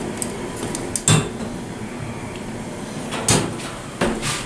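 Stainless-steel phone cabinet door in an elevator cab being opened and shut by its small handle, with two sharp metallic clacks, one about a second in and one about three seconds in.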